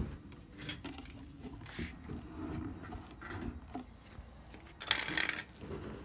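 Handling noise as the top piece of a homemade bee vacuum, a painted wooden hive-box lid with the vacuum hose attached, is lifted and set onto the stacked boxes: low rustling and small knocks, with one louder clatter about five seconds in as it lands.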